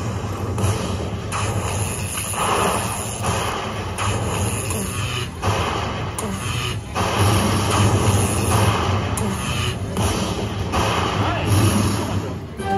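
Lightning Link Happy Lantern slot machine playing its win celebration music and sounds while the win total counts up, over the hubbub of a casino floor.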